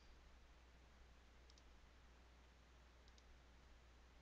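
Near silence with a steady low hum, broken by two faint double clicks of a computer mouse button, about a second and a half in and again about three seconds in.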